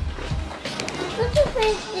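A young boy's voice making short sounds with no clear words, over background music.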